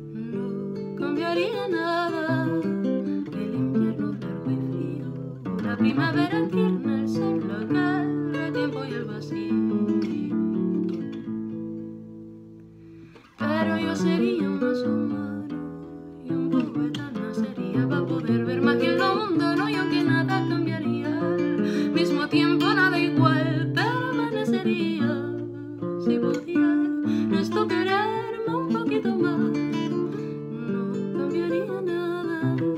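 Classical guitar played with the fingers, under a woman singing a slow song. About twelve seconds in, the music fades almost to silence, then the guitar comes back in sharply a moment later and the singing continues.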